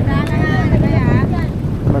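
Wind blowing across the microphone, a steady low rumble, with a voice speaking briefly in the first second or so.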